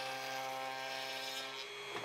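Router table running with a steady whine as a wooden frame is fed along a half-inch round-over bit, rounding over its edges.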